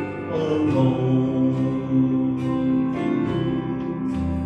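A man singing a gospel song into a microphone over instrumental accompaniment, holding long notes.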